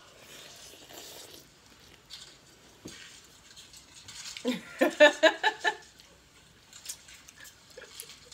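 Faint mouth and handling sounds of someone eating a mussel, with a few small clicks. A woman laughs briefly about four and a half seconds in.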